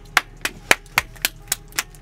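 One person clapping his hands steadily, about four claps a second.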